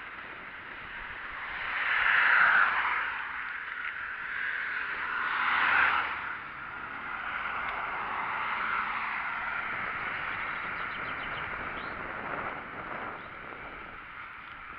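Steady rolling and wind noise from a bicycle being ridden along a paved cycle path, with two road vehicles swelling up and fading away as they pass, about two and a half and six seconds in.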